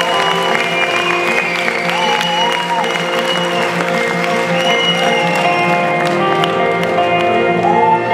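Live band playing a song's slow instrumental intro of held chords while the audience applauds and cheers. The clapping fades after about six seconds.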